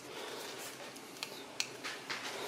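Quiet room tone with three faint, short clicks in the second half as the skateboard's handheld remote is picked up and handled.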